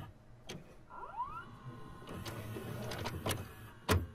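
Videocassette recorder starting playback: a few quiet mechanical clicks, and about a second in a small motor whirring up in pitch and settling into a steady whine as the tape transport gets going.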